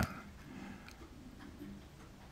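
Faint ticking over a low steady hum in a quiet room.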